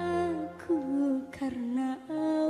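Dangdut song: a female voice sings long held notes that bend and waver in pitch, with short breaks between phrases, over a sustained accompaniment.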